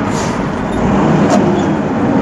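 Truck cab noise while driving: the engine runs steadily under a continuous rumble of the road, heard from inside the cab.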